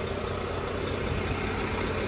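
Semi-truck diesel engine idling steadily.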